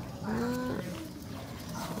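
A woman's brief wordless vocal sound, a drawn-out hum or syllable lasting about half a second, followed by quiet outdoor background.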